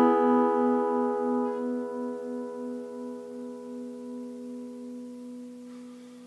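Final chord of a steel-string acoustic guitar ringing out and slowly fading away, one low note pulsing with a slow wobble as it dies.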